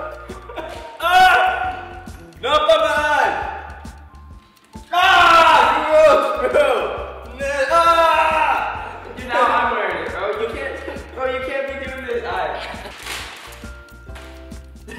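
Two young men laughing hard in repeated bursts, over background music.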